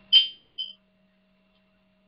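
Two short, high electronic beeps about half a second apart, the first louder.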